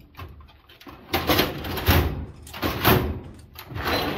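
Steel file-cabinet drawer pulled open on its slides, with the tools inside rattling and clattering: several loud scraping bursts after a quiet first second.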